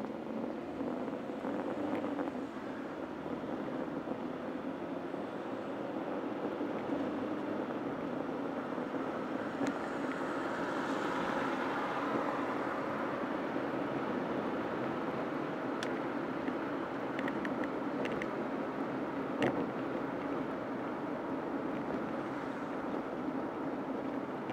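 An SUV's engine and tyre noise heard from inside the cabin, growing over the first ten seconds as it pulls away and picks up speed, then running steadily. A few light clicks or rattles come in the second half.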